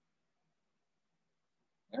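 Near silence in a pause between spoken sentences, with a man's voice starting again near the end.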